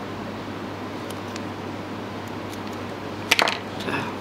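Small handling sounds of fishing tackle over a plastic cutting board: a few faint ticks, then a sharp click a little past three seconds in and a smaller one near the end, over a steady room hum.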